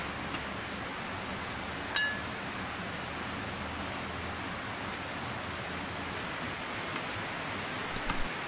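Steady background hiss with a single clink about two seconds in: a metal spoon striking the dish as rice is served, ringing briefly.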